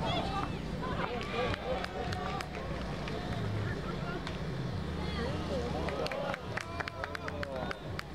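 Basketball game sounds: sneakers squeaking on the court and players' voices. About six seconds in comes a quick series of sharp ball bounces, all over a low steady hum.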